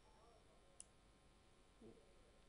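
Near silence: faint room tone on the line, with one short, faint click a little under halfway through.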